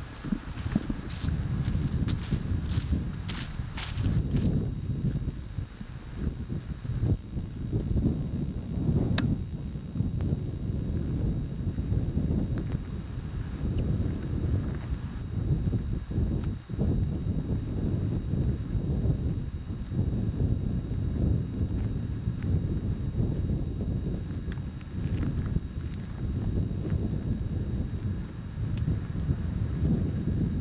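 Wind buffeting a camcorder microphone, a low rumble that swells and drops in gusts throughout, with a few sharp clicks in the first few seconds.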